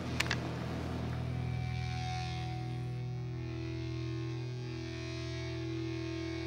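Music: a sustained droning chord on electric guitar with effects, held steady without a beat. A short click sounds just after the start.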